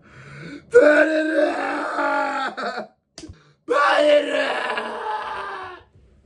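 A man's loud wailing cry of grief, given twice: two long drawn-out wails of about two seconds each, with a short break between them.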